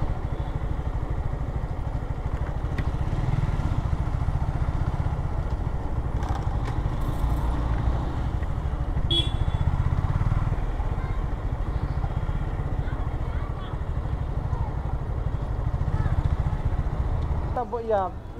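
Motorcycle engine running steadily at low speed as the bike rolls slowly along, its firing pulses giving an even low rumble.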